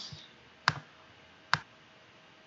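Two sharp clicks from the computer's input controls, a little under a second apart.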